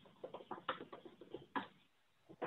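Faint, irregular tapping of computer keys, about a dozen quick strokes in a second and a half with one sharper stroke near the end of the run, as someone types a search.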